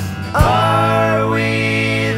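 A band's recorded song, an instrumental passage: a long held note that bends slightly in pitch enters about half a second in over a steady low bass note.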